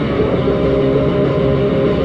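Live hardcore punk band playing at full volume: distorted electric guitar over bass and drums. It is heard through a dull, distorted audience recording with little treble.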